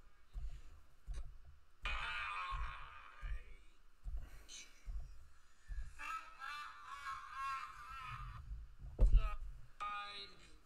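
Tinny audio from a phone speaker: a voice-like sound in two stretches, about two seconds in and again from about six to eight seconds, over a run of low thuds. A sharp knock just after nine seconds is the loudest moment.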